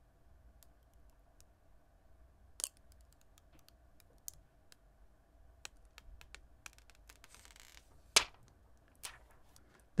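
Faint handling sounds of a film screen protector's backing liner and guide stickers being peeled off a phone by hand: scattered small clicks and ticks, a sharper click about two and a half seconds in and another about eight seconds in, with a short soft peeling hiss just before the second.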